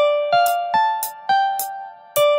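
A short looped melody from an FL Studio instrument plugin with a plucked, keyboard-like tone. Each note starts with a bright, sharp attack and dies away. The notes climb D–F–A and then drop to G, and the phrase repeats about every two seconds.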